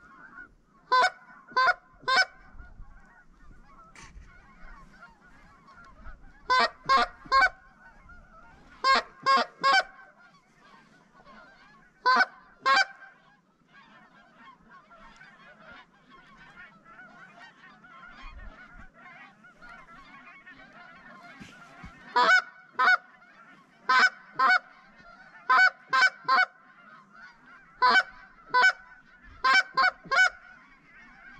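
Geese honking: loud, sharp honks in quick runs of two or three, coming every few seconds with a pause of several seconds midway, over a constant fainter clamour of a flock honking and clucking.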